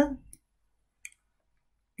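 A single faint computer mouse click about a second in, amid near silence.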